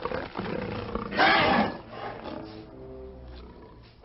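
Giant alien bug creature roaring once, a loud rough snarl about a second in that lasts about half a second, then dies down.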